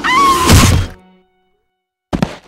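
Cartoon impact sound effect: a loud thunk of a baseball smashing into a character's head, with a held whistle-like tone over it. It cuts off about a second in.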